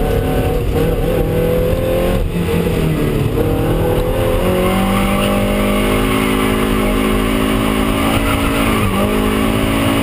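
2001 Toyota MR2 Spyder's mid-mounted 1.8-litre four-cylinder engine heard from inside the cabin, revving on track. The note climbs about four seconds in and holds high, with a brief dip about nine seconds in before it rises again.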